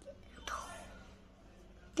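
A brief faint whisper about half a second in, fading away, then quiet room tone.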